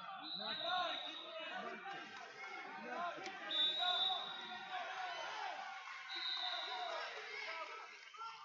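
Indistinct chatter of many spectators and coaches in a large echoing gym, with a single sharp knock about three seconds in.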